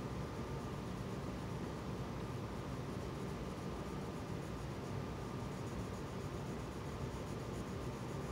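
Colored pencil shading on paper: a soft, steady scratching of the pencil lead over room hiss.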